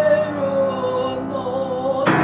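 Live acoustic music: a woman sings one long held note with a slight waver that sags a little in pitch, over piano and acoustic guitar chords. A new chord comes in at the very end.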